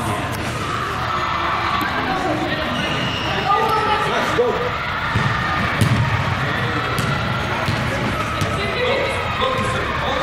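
Echoing indoor sports-hall ambience: players and spectators calling out indistinctly while a soccer ball is kicked on artificial turf, with a few sharp thuds of the ball scattered through.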